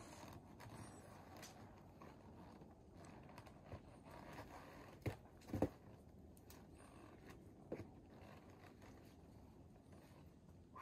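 Near silence: faint background hiss with a few short, faint clicks and knocks around the middle.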